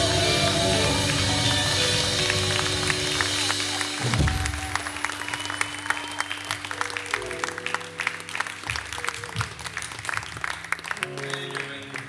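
A live R&B band ends a song: held chords with a final low hit about four seconds in, then audience clapping over lingering sustained keyboard and bass notes, fading toward the end.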